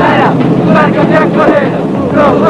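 Many voices shouting and chanting together over the steady hum of a moving passenger train.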